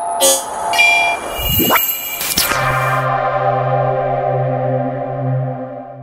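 Electronic logo sting: a short hit, a rising sweep, then a whoosh about two and a half seconds in that opens into a long held synthesizer chord, fading near the end.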